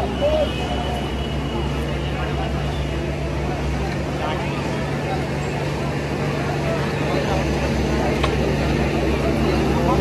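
An engine running steadily with a low, even drone, with people talking in the background.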